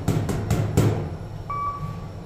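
A loose stainless-steel elevator car operating panel knocking and rattling under a hand, a few sharp knocks in the first second. About a second and a half in, a single steady electronic beep from the Kone elevator's floor indicator sounds as the indicator changes.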